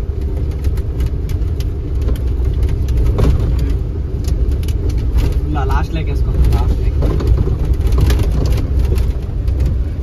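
A truck's engine running steadily, heard from inside the cab as the truck creeps along in slow traffic: a deep, continuous rumble with frequent light rattles and knocks from the cab.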